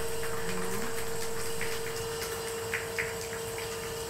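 Wet clay squelching and sloshing under the hands as it is pressed down on a spinning potter's wheel, with a few short wet smacks. A steady hum runs underneath.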